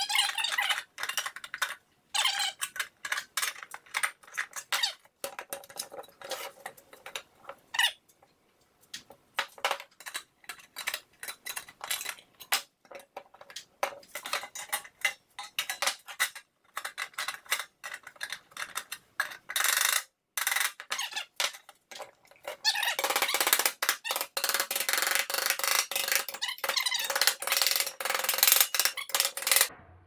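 26-gauge galvanized sheet steel being cut and bent with hand tools: a long run of short, sharp squeaks and crunches of metal, growing denser and nearly continuous in the last several seconds.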